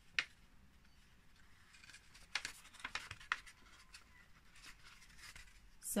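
Faint rustling and crinkling of a folded sheet of paper being handled while thread is pulled through its holes, with a sharp click just after the start and a cluster of short rustles and ticks around two to three seconds in.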